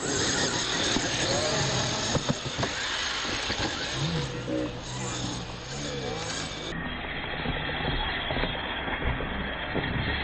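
Radio-controlled monster trucks running on a dirt track: a steady noisy sound with scattered sharp ticks. The call 'Go!' comes about two seconds in.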